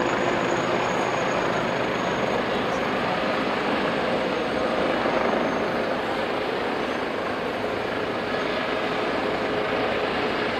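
Airbus H145M helicopter's twin turboshaft engines and rotors running steadily as it settles from a low hover onto the ground, the noise easing slightly in the second half.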